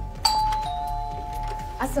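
Electronic two-tone doorbell chime: a higher note sounds about a quarter second in, and a lower note joins shortly after. Both ring on steadily until nearly two seconds in.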